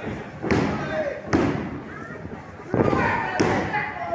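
Wrestlers' bodies hitting a wrestling ring's mat: four sharp thuds at uneven intervals, with shouting voices between them.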